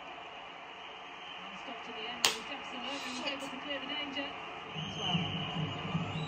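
Football match broadcast playing from a TV: commentator's voice and crowd noise under it, with one sharp smack a little over two seconds in.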